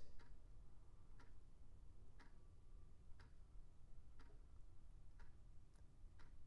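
Near silence with a faint, regular tick about once a second.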